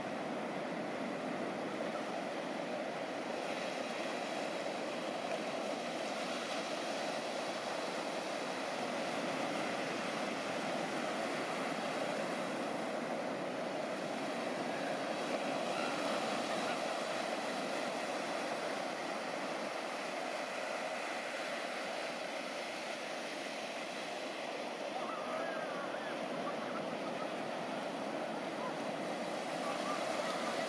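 Ocean surf: a steady wash of breaking waves and whitewater, even throughout with no single crash standing out.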